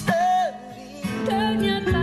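A male singer accompanied by acoustic guitar holds a sung note that ends about half a second in. After a brief quieter moment, a different song with another singing voice over low sustained notes begins about a second in.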